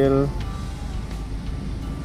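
A voice holding a steady pitch ends about a quarter second in, followed by a steady low rumble.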